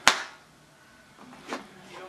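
A single sharp click right at the start, followed by quiet room tone.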